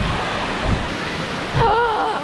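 Water pouring and spraying down from the overhead pipes of a splash-area play structure, a steady rush like heavy rain, with two low thumps partway through.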